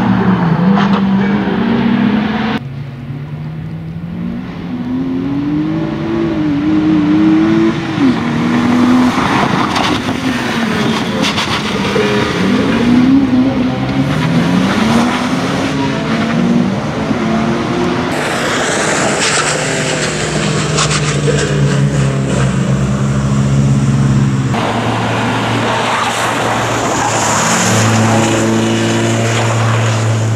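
BMW E46 rally car's engine revving hard, its pitch climbing and dropping again and again as it accelerates, shifts and brakes through a tight course, in several short passes.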